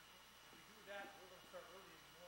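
Faint, distant voices talking over near-silent lakeside quiet.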